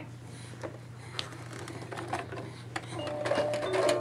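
A baby's musical toy sea turtle being handled, with scattered plastic clicks and taps. About three seconds in, the toy's tune starts playing, a run of steady, bright plucked-sounding notes.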